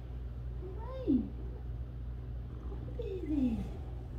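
Orange-and-white domestic cat meowing twice, about two seconds apart. Each call falls in pitch: the first rises briefly before dropping, and the second is a longer, drawn-out fall. A steady low hum runs underneath.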